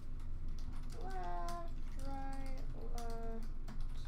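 Scattered light clicks of a computer keyboard as an online randomizer is run, with a man's short spoken exclamations in the middle.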